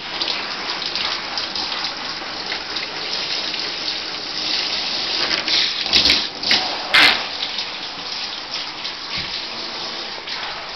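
Water spraying steadily from a handheld shower head onto a springer spaniel's coat in a bathtub. Two louder sudden noises break in about six and seven seconds in.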